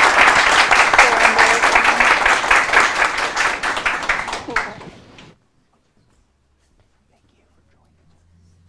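A small audience applauding by hand, a dense patter of many claps that thins out about four and a half seconds in and then stops abruptly, leaving near silence.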